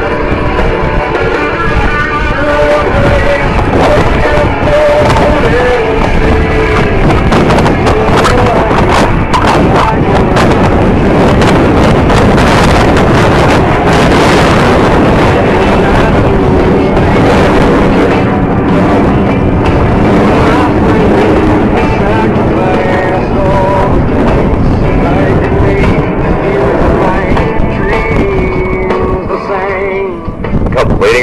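Music over loudspeakers, with the rushing jet noise of the Blue Angels' four F/A-18 Hornets flying in diamond formation swelling in the middle and then easing off.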